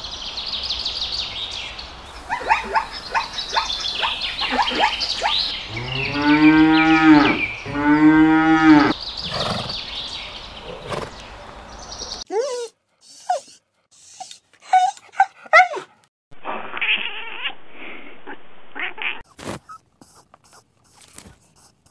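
Birds chirping, then two long, low animal calls of about a second each. After an abrupt cut comes a string of short, choppy animal-sound snippets.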